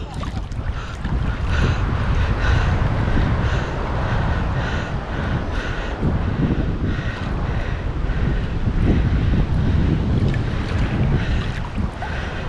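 Wind rumbling on the microphone over shallow sea water lapping, with a faint scratchy sound repeating about twice a second.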